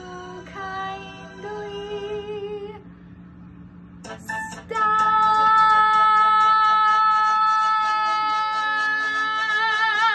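A woman singing solo: a few short held notes, then a loud belted high note held for about five seconds, steady and then shaking into vibrato near the end.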